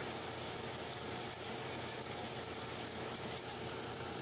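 Steady mechanical hum and water wash of a running gravity shaker table, as ore slurry and wash water flow across its shaking deck.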